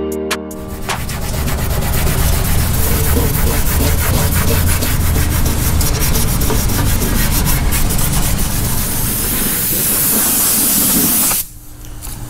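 Maroon Scotch-Brite pad scuffing the painted surface of a car door by hand in rapid back-and-forth rubbing strokes, which start about a second in and stop just before the end. The pad is roughing up the old finish so the new paint has something to bite to.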